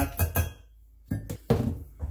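Sharp clinks of kitchen utensils against a glass mixing bowl. There is a quick cluster of clinks at the start, a short pause, then another cluster about a second in, the last one ringing briefly.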